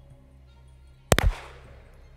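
A single pistol shot about a second in, sharp and loud, with a short echoing tail, over faint background music.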